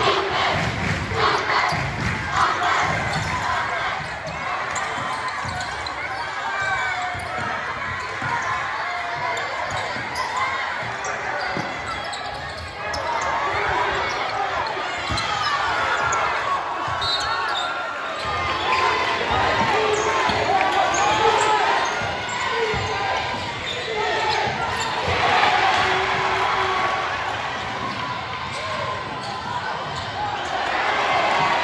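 Game sounds of a basketball game in a gym: a ball being dribbled on the floor, with knocks thickest in the first few seconds, over the talk and shouts of the crowd and players.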